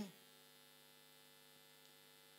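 Near silence: a faint, steady electrical hum from the PA sound system during a pause in the speech.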